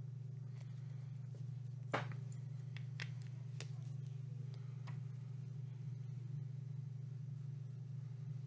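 A steady low hum with a few faint, short clicks and taps scattered through it.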